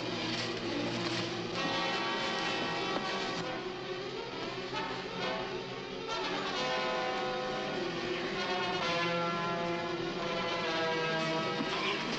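Orchestral film score with brass, playing held chords that change every second or two.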